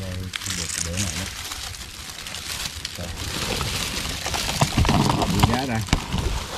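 Dry leaves and brush rustling and crackling as hands work around a shrub rooted in a rock crevice.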